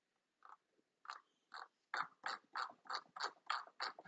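A series of short, evenly spaced taps or clicks, about three a second, growing louder toward the end.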